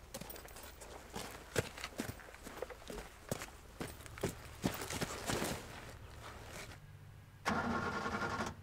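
Footsteps crunching on loose gravel and rock, irregular and uneven. Near the end a louder burst of vehicle engine sound comes in for about a second.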